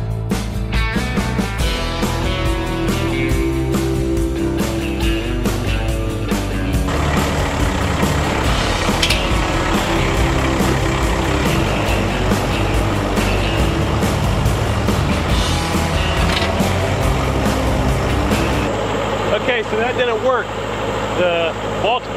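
Strummed guitar music for the first several seconds. Then the diesel engine of an LS XR4040 compact tractor runs loudly for about ten seconds while it works a field with a box blade. The engine sound drops away a few seconds before the end, when a man's voice comes in.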